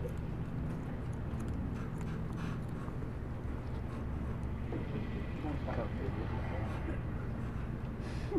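Steady low room hum, with faint background voices murmuring now and then, strongest about five seconds in.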